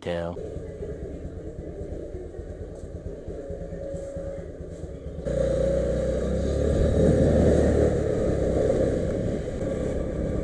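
Honda scooter engine running as it is ridden along a street. A quieter steady hum for the first half cuts abruptly to a louder run about halfway through.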